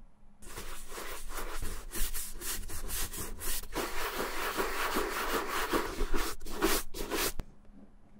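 A wooden-backed shoe brush scrubbed briskly back and forth over the leather upper of a Red Wing boot, a long run of rough rubbing strokes. It starts about half a second in and stops just before the end.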